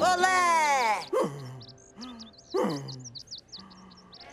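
Cartoon sound effects for a character knocked flat: a falling, groan-like voice sound at the start and two short groans. From about a second and a half in comes a run of high twittering chirps, the stock cartoon effect for being dazed.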